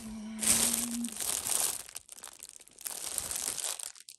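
Clear plastic bags crinkling as they are handled, in two stretches of rustling, the first about half a second in and the second near the end.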